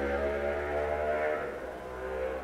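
Soft background music: sustained chords holding steady, easing down a little toward the end.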